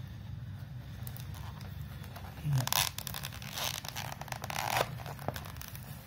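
Kitchen knife slitting through the plastic blister and cardboard backing of a toy package, with rasping, ripping and crinkling plastic in bursts about two and a half seconds in and again from about three and a half to five seconds.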